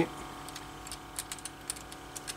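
A scattering of faint, irregular light clicks from hands working the locking fitting of a household water filter housing, locking the newly screwed-in cartridge in place.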